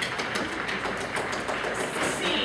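Irregular light taps and clicks, several a second, over a steady hiss of room noise.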